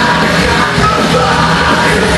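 Loud live post-hardcore band playing at full volume, with electric guitars, bass and drums under a yelled vocal.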